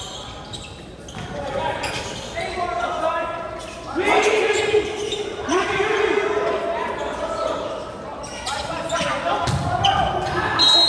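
Volleyball rally on a hardwood gym court: sharp knocks of the ball being hit and players' shoes on the floor, with loud shouting from about four seconds in, echoing in the large hall.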